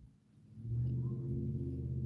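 A woman's low closed-mouth hum, a steady held "mmm" at one pitch, starting about half a second in after a brief silence.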